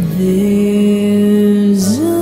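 A woman singing one long, steady held note over soft musical accompaniment, the pitch sliding up near the end.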